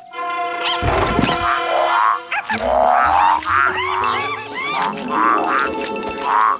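Cartoon background music with a soft thud about a second in. From about halfway on it carries a quick string of short, arching cartoon frog calls, about two a second, as a group of animated frogs hops past.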